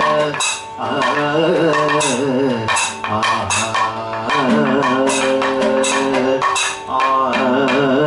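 A male Kathakali singer chanting in a wavering, ornamented melody over a steady shruti box drone. He keeps time with regular strikes of small brass hand cymbals, about one or two a second.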